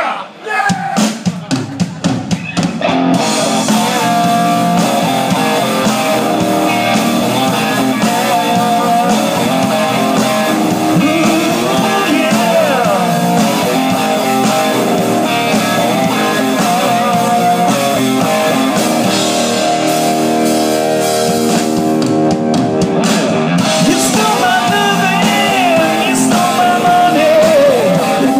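Heavy metal band playing live, with distorted electric guitar and drum kit. The song opens with a few separate hits over the first couple of seconds, and the full band comes in about three seconds in; there is a short break near the end before it drives on.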